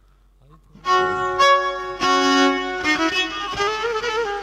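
Kemençe, the small bowed Black Sea fiddle, starts playing about a second in after a near-silent pause, bowing sustained notes that change pitch every half second or so.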